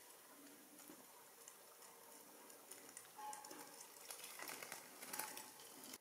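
Faint scattered clicking and rustling from a death's head hawkmoth stirring against the fingers that hold it over a honey cap. The clicks grow denser about halfway through and stop abruptly at the end.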